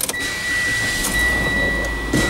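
2017 Mitsubishi ASX being started: a steady high warning tone sounds from the dashboard, and about a second in the engine catches and settles into a low idle hum.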